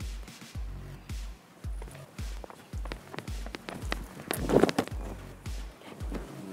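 Background music with a steady beat about twice a second, over quick running footsteps on a rubber athletics track. About four and a half seconds in, a louder thump marks the jumper landing on the foam high-jump mat.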